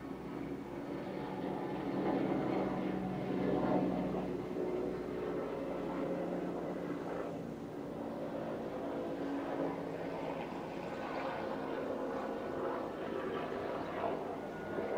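A steady engine-like drone with several held tones, louder than the surrounding room sound, rising slightly about two seconds in.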